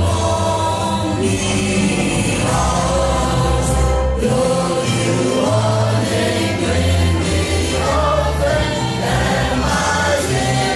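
A national anthem played from a recording over a sound system: a choir singing over a sustained bass accompaniment.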